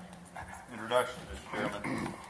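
Indistinct voices talking away from the microphones, in short bursts of chatter.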